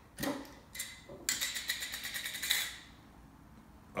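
The metal lid of a glass mason jar being unscrewed: a couple of short knocks, then a quick rasping run of fine ticks as the lid turns on the glass threads.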